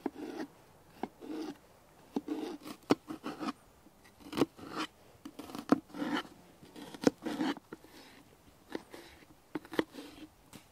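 Kitchen knife chopping garlic and then slicing an onion on a round wooden cutting board: irregular sharp knocks of the blade on the board mixed with short crisp cutting and scraping sounds.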